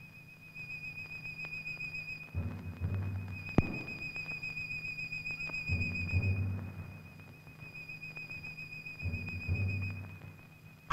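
A steady, high whistling trill runs throughout, and a low, rhythmic pulsing sound comes in three times for a second or so each. A single sharp click sounds a few seconds in.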